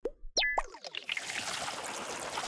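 Animated-transition sound effect: a few quick pitch-sliding pops in the first half-second, then a steady airy whoosh.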